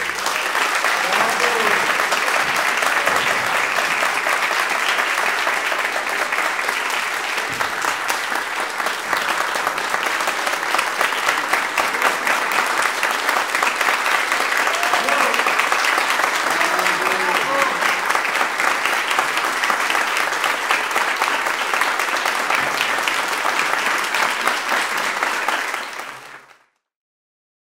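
Concert audience applauding steadily after the last chord of a viola and cello duo. It starts suddenly and cuts off at the end.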